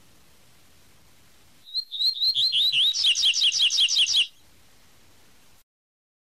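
Double-collared seedeater (coleiro) singing its 'tui tui' song: a quick run of repeated high gliding whistles, about six a second, that starts about two seconds in, grows louder and ends abruptly a couple of seconds later. The recording then cuts to silence shortly before the end.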